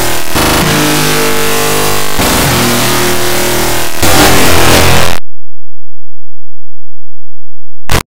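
Very loud, heavily distorted and clipped music-like audio with pitched tones, repeating in a loop about every two seconds, which cuts off suddenly about five seconds in; a short burst comes back near the end.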